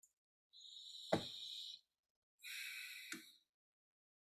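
Two faint breaths close to the microphone, each about a second long, about a second apart. A sharp click sounds in the middle of each.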